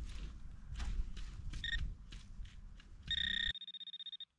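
Handheld metal-detector pinpointer beeping in the dug soil: a short beep about one and a half seconds in, then a longer steady tone near the end that breaks into rapid pulses, signalling a metal target close to its tip. Soil crunches and scrapes as it is probed before the tones.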